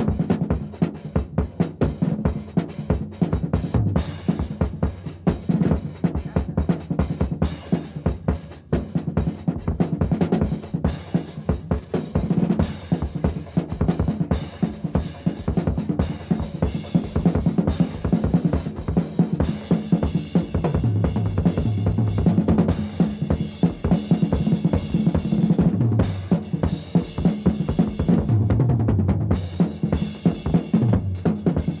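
Live funky rock instrumental by a guitar, bass and drums trio, the drum kit to the fore with a fast, busy stream of hits over steady low notes.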